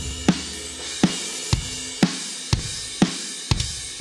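Sampled metal drum kit from virtual drum instruments, with Addictive Drums and EZDrummer kick and snare layered together, playing a beat with heavy hits about twice a second over a steady cymbal wash.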